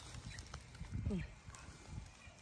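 A woman's voice says one short word with a falling pitch about a second in. Faint rustling and small clicks of leaves and branches being handled are heard around it.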